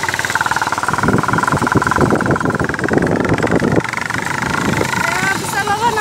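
A vehicle engine running steadily with a high whine while travelling a rough gravel road, with irregular knocks and rattles through the middle seconds.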